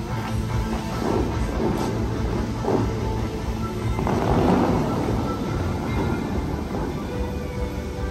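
Music playing, with surges of rushing, splashing water as the Dubai Fountain's jets shoot up and fall back. The loudest surge is about four seconds in.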